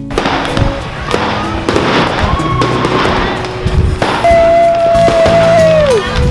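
New Year fireworks going off, with a run of sharp cracks and bangs. About four seconds in, a long steady whistle-like tone sounds over them and drops in pitch at the end.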